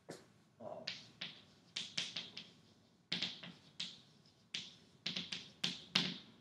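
Chalk writing on a blackboard: a quick series of short taps and scrapes as letters are stroked on, about two or three a second.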